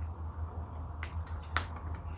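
Close-miked eating sounds of a person chewing grilled chicken, with a few sharp wet mouth clicks: one about a second in and a louder one about half a second later. A low steady hum runs underneath.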